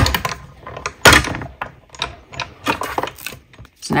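Hand-cranked die-cutting and embossing machine rolling plates and a 3D embossing folder through, with clacks and clicks of the hard plastic plates: a sharp clack at the start, another about a second in, and lighter clicks around two to three seconds in.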